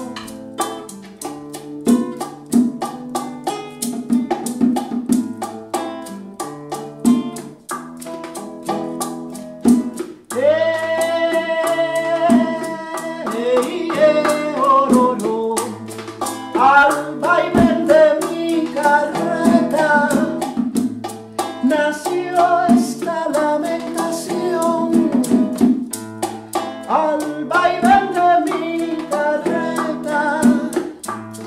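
Afro-Cuban song played live on a nylon-string acoustic guitar, which picks a repeating bass pattern, with bongos. About ten seconds in a woman's voice comes in with a long held note, then sings on over the guitar and drums.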